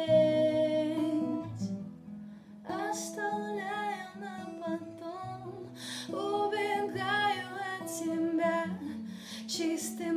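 A woman singing in Russian while playing an acoustic guitar, with a short break in both about two seconds in.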